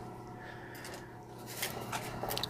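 Quiet room tone with a faint, steady low hum, and a few light clicks near the end.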